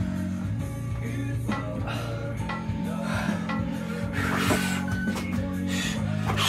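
Rock song with singing and guitar over a steady bass line, playing from a radio.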